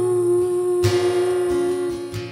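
A woman's voice holding one long sung note that dips slightly in pitch at the start, over acoustic guitar, with a guitar strum a little under a second in.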